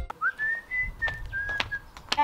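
A person whistling a short phrase of a few held notes that rise at first and then gently fall, stopping just before the end.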